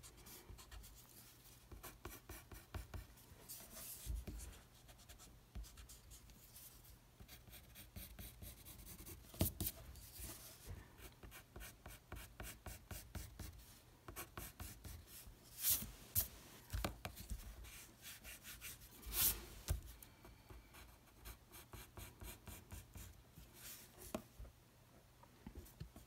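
Pencil drawing on paper: faint, rapid scratching in many short strokes, with a few louder strokes scattered through.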